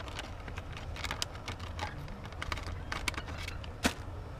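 Plastic lure packaging and a cardboard box being handled: irregular light crinkles and clicks, with one sharper click near the end.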